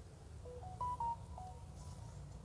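Faint electronic melody: about eight short beeps at changing pitches in quick succession, starting about half a second in.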